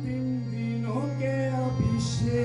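A man singing a worship song into a microphone, his voice sliding between notes, over a steady held harmonium drone.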